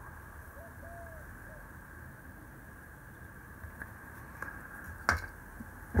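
Quiet room tone with a faint, soft three-part call about a second in, then a single sharp knock about five seconds in as the plywood cut-out pieces are put down on the wooden workbench.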